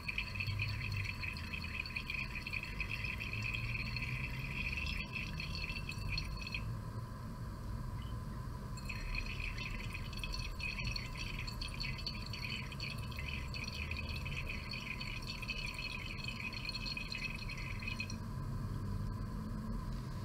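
Liquid swirled round a glass conical flask as hydrochloric acid drips in from a burette: a steady hiss that stops twice for a couple of seconds.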